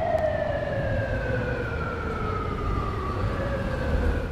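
A single sustained tone that slides slowly down in pitch, over a low rumble, and cuts off just after the end.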